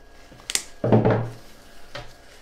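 A single sharp snip of floral cutters about half a second in, followed by a duller knock of handling on the wooden worktable.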